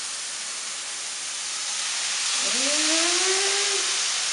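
Ground turkey frying in a hot skillet with a steady hiss. The hiss grows louder as marinara sauce is poured into the pan. A short rising tone sounds about two and a half seconds in.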